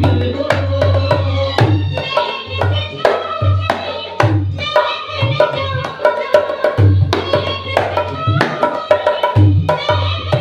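Dholak played by hand in a steady folk rhythm: deep bass-head strokes mixed with sharp treble-head slaps, over a recorded Hindi film song with melody and singing.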